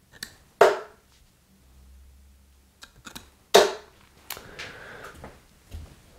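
Two steel-tip tungsten darts thudding into a bristle dartboard, about three seconds apart, each a sharp hit with a brief ring. Fainter clicks and knocks fall in between.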